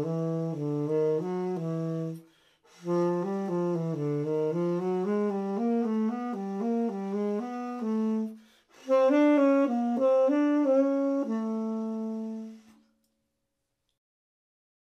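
Solo tenor saxophone playing three quick phrases of small stepwise note moves, each cell kept within a major third and linked to the next, so the line works upward through the low register. Short breaths separate the phrases, and the last one ends on a held note near the end.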